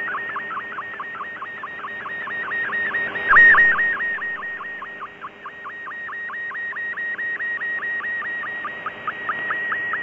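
MFSK64 digital picture transmission received off shortwave: a warbling data tone between about 1 and 2 kHz that dips down and back about five times a second over receiver hiss. The signal fades briefly twice. Near the end the dips shorten toward a steady high tone as the picture nears completion.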